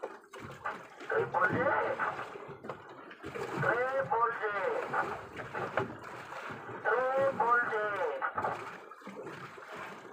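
Voices speaking in three short spells, with quieter gaps between them.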